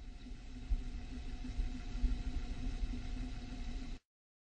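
A low, steady rumbling noise with a faint hum running through it. It fades in, grows slightly louder, then cuts off suddenly at the end.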